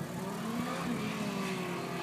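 A car engine heard from the trackside as the car drives around the circuit, its note falling slowly in pitch.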